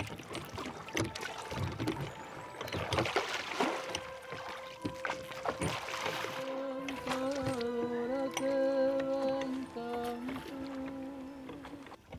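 A wooden rowing ferry boat being rowed: the oar splashes in the river and the boat knocks irregularly against the water. About six seconds in, a held musical drone begins and carries on, stepping slightly in pitch.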